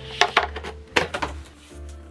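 A cardboard box being opened by hand: a handful of sharp taps and scuffs as the lid and its contents are handled, over soft background music.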